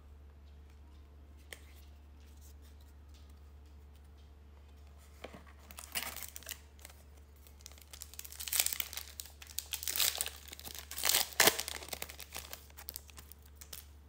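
A foil trading-card pack wrapper torn open and crinkled by hand: a run of sharp crackling rips begins about five and a half seconds in and grows loudest near the end.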